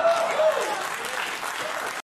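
Studio audience applauding after a joke's punchline, a dense even clatter of clapping that cuts off abruptly at the end.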